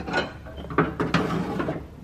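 Cutting-deck height lever of a Craftsman riding mower being worked through its notches, giving a few ratcheting clicks of metal.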